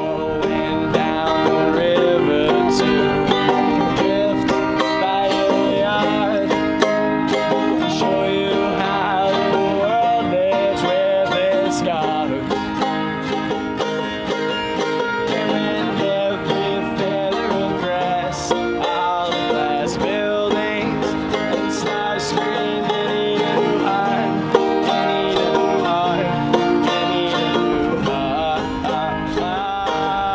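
Live folk song on banjo and acoustic guitar, the banjo picked and the guitar strummed, with a man's voice singing at times.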